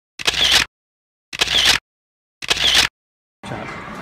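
Camera shutter sound effect, three shutter clicks about a second apart with dead silence between them. A noisy busy-room background cuts in near the end.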